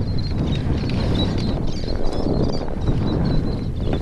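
Wind buffeting the microphone, a steady low rumble, with a few light knocks and plastic rustling as a caught little tunny is handled on a kayak deck.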